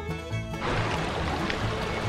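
Bluegrass-style background music whose melody drops out about half a second in. The steady rush of a shallow creek running over stones takes over, with the music's low beat still pulsing underneath.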